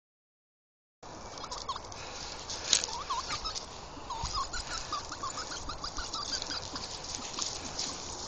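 Male Reeves's pheasant giving a string of short, soft whistled notes, a few a second, starting about a second in; the bird is agitated and squaring up to attack. A sharp click comes about three seconds in.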